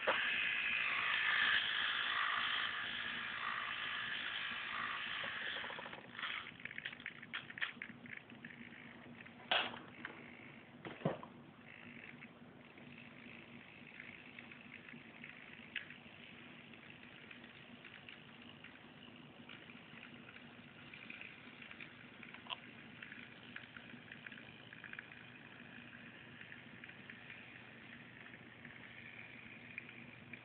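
Small electric drive motor of a 1:55-scale remote-control crane whirring for about six seconds, then stopping, followed by a scatter of light clicks and crackles and a faint hiss.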